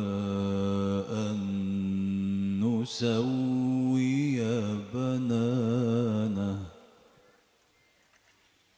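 A man's solo voice reciting the Qur'an in melodic tajwid style, with long held notes and wavering ornaments, closing a verse about seven seconds in.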